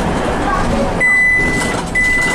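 City bus in motion, its engine and road noise heard from inside at the front of the bus. About a second in, a steady high-pitched electronic beep sounds, breaks off briefly near the end, and starts again.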